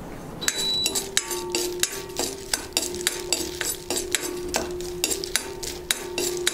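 Metal spoon stirring and scraping in a small metal pan on a gas stove: many quick, irregular clinks and scrapes starting about half a second in, over a steady hum.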